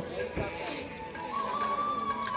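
Background voices and faint music with held notes, broken by one dull thump about half a second in.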